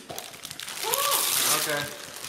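Christmas wrapping paper and plastic packaging crinkling and rustling as a present is unwrapped by hand, with a voice speaking over it from about a second in.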